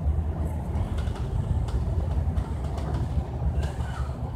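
Steady low rumble of an MAN Lion's City (A95) double-deck bus driving along, heard inside the cabin: engine and road noise, with a few faint clicks and rattles.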